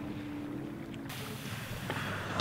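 Faint outdoor background with a low steady hum, then, about a second in, a sudden steady hiss of wind on the microphone.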